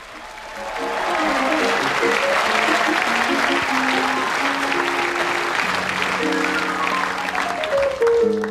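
Studio audience applauding over the show's theme music. The applause swells over the first second, and applause and music cut off suddenly at the end.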